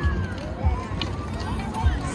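Children's voices chattering in the background outdoors, with a few low thumps.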